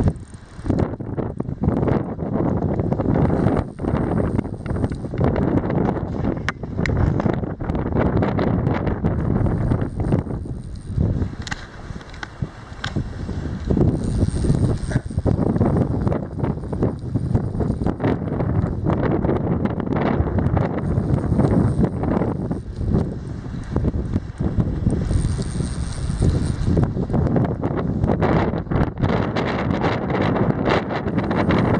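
Wind buffeting the microphone in a steady rumble, with spells of a fly reel's ratchet clicking as line is reeled in and given to a hooked sea trout.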